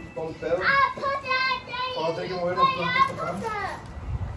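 A young child vocalizing in a high voice, the pitch sliding up and down with no clear words.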